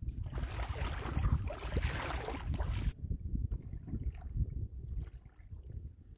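Rubber boots wading and sloshing through a muddy puddle, with wind rumbling on the microphone. About three seconds in the sound changes abruptly to sparser squelches and drips.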